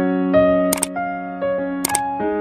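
A bright electric-piano melody plays in short chords, broken by two sharp double clicks, about three-quarters of a second in and again near the end: click sound effects timed to an on-screen cursor pressing the like and subscribe buttons.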